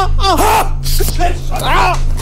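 A person shouting the same short word again and again, chant-like, about four short calls in two seconds, with a steady low music bed underneath.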